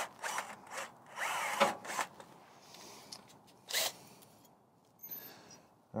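Cordless drill with a small bit drilling a pilot hole into a metal rock slider, run in a few short bursts with a brief whine as the motor speeds up and slows, then stopping after about four seconds.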